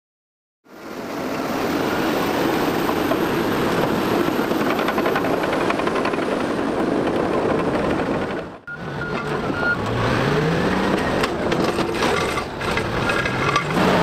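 Large crawler bulldozers at work: a steady, noisy rumble of diesel engine and tracks. After a short break just past the middle, a diesel engine rises in pitch as it revs.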